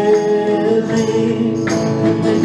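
Live worship song with acoustic guitar strumming under held sung notes; a sharper strum lands near the end.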